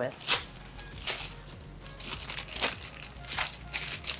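Crumpled parchment paper crinkling in short, irregular rustles as it is unfolded and smoothed out by hand over a metal sheet pan.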